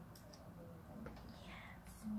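Near silence: a soft whisper, with a couple of faint small clicks.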